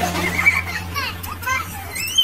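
Children's high-pitched voices squealing and calling out without clear words, over a steady low hum that fades out about a second in.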